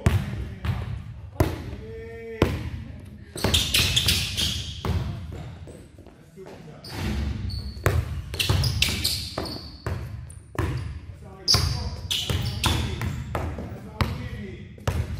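Basketballs bouncing on a gym floor, several balls dribbled at once, giving an irregular run of sharp thumps.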